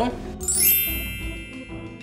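A bright chiming sound effect: many ringing tones come in with a quick upward sweep about half a second in, then fade away.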